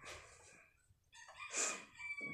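A rooster crowing faintly, the call starting about three-quarters of the way in.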